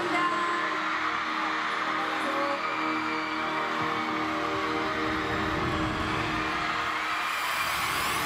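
Music with long held chords playing over a steady, even crowd noise.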